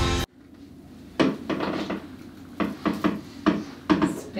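Background music cuts off just after the start. After a short quiet spell comes a run of about ten light, irregular knocks and clunks over the next three seconds.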